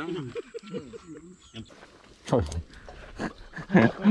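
Men's voices talking, with one loud exclamation sliding down in pitch about two and a half seconds in.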